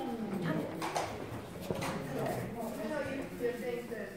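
Indistinct voices talking in the room, with a few sharp clicks about a second and a half apart.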